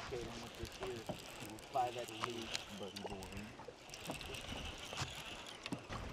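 Faint, distant talking, with a few light clicks.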